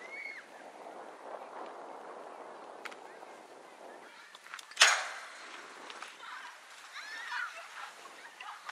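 A single loud, sharp crack about five seconds in as the pitched softball reaches home plate, over steady outdoor background noise. Players' voices call out near the end.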